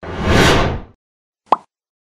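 Logo-animation sound effect: a noisy whoosh lasting about a second, its top end fading first, then a single short pop about a second and a half in.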